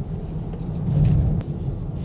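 Low rumble of road and drivetrain noise inside the cabin of a moving 2020 Lincoln Aviator, swelling briefly about halfway through.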